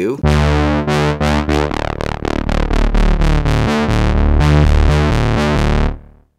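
Arturia MatrixBrute analog monosynth playing a rhythmic line of changing notes with a heavy low end. It runs through a Neve-style preamp plug-in with the preamp gain driven and the low end boosted on its EQ.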